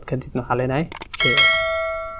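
Subscribe-button sound effect: a click, then a bell chime that rings out and fades over about a second.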